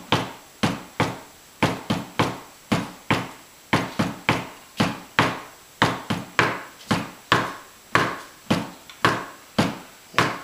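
Felt-headed tenor drum mallets striking a practice surface on a wooden table, playing a pipe band tenor part at about two to three strokes a second, each stroke sharp and quickly dying away.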